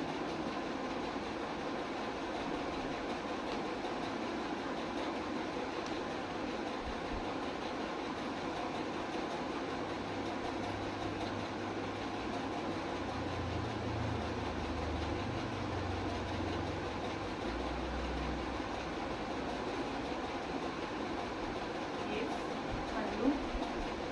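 Steady background room noise with an even hiss, and a low rumble underneath from about ten to nineteen seconds in.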